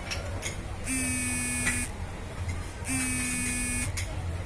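An electronic buzzer or alarm beeping in a steady on-off pattern: two flat, unchanging tones of about a second each, starting about a second in and again about three seconds in.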